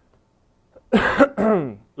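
A man coughs once. It is a rough burst about a second in, followed by a short voiced tail.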